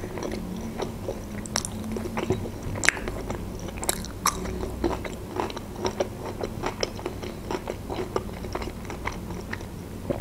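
A person chewing a mouthful of fried pirozhok close to the microphone, with many small irregular mouth clicks and smacks over a faint steady hum.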